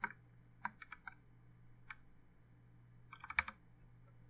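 Keystrokes on a computer keyboard: a few separate presses, then a quick run of presses about three and a half seconds in, as a number is deleted from a command with the backspace key.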